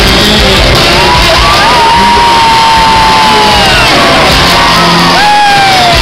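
Zydeco band playing loud and live, led by a piano accordion with electric guitar. A voice holds a long high cry over the band about a second and a half in, sliding slowly down, and a shorter falling cry comes near the end.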